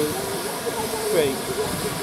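Steady hiss of steam from GWR Castle-class steam locomotives standing in steam, under a man's voice counting.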